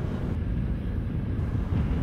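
Steady low rumble of wind buffeting the microphone outdoors, with no speech.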